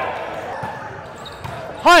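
Echoing gym ambience on a hardwood court, with faint thuds of a ball bouncing on the floor and distant players' voices. Near the end comes a loud shouted 'hut' call.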